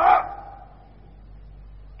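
A man's voice ending a word at the start, then a pause filled only by the faint steady hum and hiss of an old tape recording.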